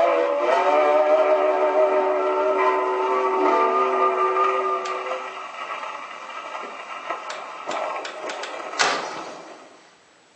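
Victrola VV 8-4 acoustic phonograph playing a 78 rpm record: a held chord sounds for about five seconds and then fades away, leaving surface crackle and clicks, with one sharp click near the end.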